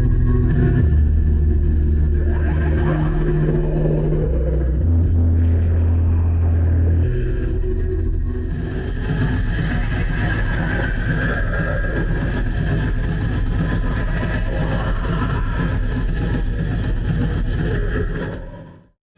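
Loud amplified live music heard from the audience, bass-heavy: deep sustained bass notes that shift pitch a few times in the first seven seconds, then a denser, rougher texture from about eight seconds on.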